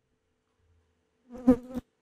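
Brief loud electrical buzz on the microphone line with a couple of sharp clicks, about one and a half seconds in, then a faint steady hum.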